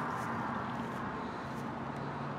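Steady low outdoor background hum with no distinct events.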